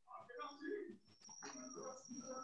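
Faint, indistinct voices coming through a video-call connection, with a thin steady high-pitched tone starting a little past a second in.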